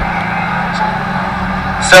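Engines of several autograss racing cars running at speed around a dirt track, heard from trackside as a steady drone with no let-up.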